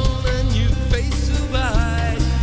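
Rock band playing an instrumental passage with drums, bass guitar and electric guitar. A lead line of bent, wavering notes rises and falls near the end.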